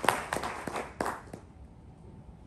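Audience applause thinning to scattered claps and dying away about one and a half seconds in.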